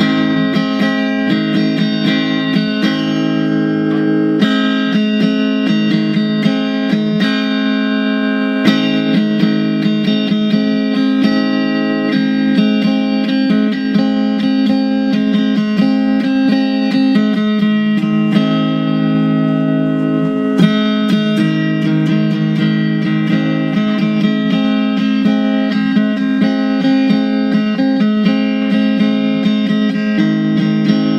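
Fender Stratocaster electric guitar played through a small amp: an instrumental country tune, picked notes and chords in a steady run without a break.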